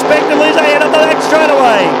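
A race commentator talks over the steady drone of 4.2-litre Holden 253 V8 race boat engines; near the end an engine note falls away in pitch.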